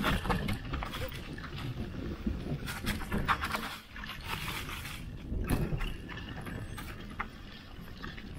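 Mountain bike running down a dirt trail, heard through a camera mounted on the bike: a continuous rumble of tyres on the ground and wind, with frequent knocks and rattles as the bike goes over bumps.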